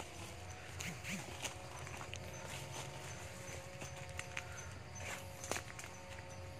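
Irregular footsteps on dry leaf litter and stone, with a few sharp crackles of leaves and twigs, over a faint steady background hum.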